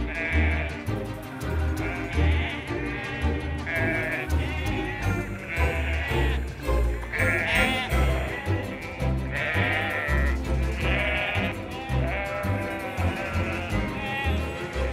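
A flock of sheep bleating over and over, many short wavering calls overlapping, over background music with a steady bass beat.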